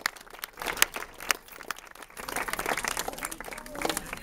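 Scattered hand clapping from a small outdoor audience: irregular sharp claps that thicken about halfway through, greeting the end of a speech.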